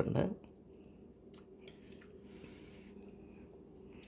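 Quiet room tone with a few faint, sharp clicks and a soft rustle, as of light handling at a table.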